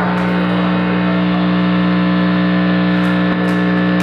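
Amplified electric guitar sustaining a steady, unbroken drone through the stage amp, a held chord or feedback ringing on between songs.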